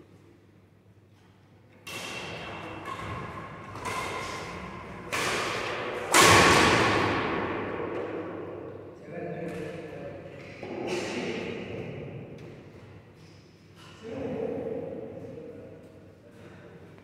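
Badminton rackets striking a shuttlecock, sharp hits ringing out around a large indoor hall. They come about one a second for a few seconds, the loudest about six seconds in, then a few more spaced hits, with voices mixed in.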